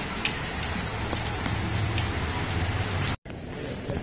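Steady rain, with a low steady hum underneath. It cuts off suddenly a little after three seconds and gives way to a quieter indoor room.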